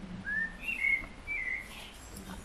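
A few short, clear whistled notes: one rising note, then two or three brief notes that dip slightly in pitch.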